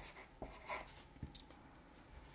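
Felt-tip marker writing on paper: a few faint, short strokes that end about a second and a half in.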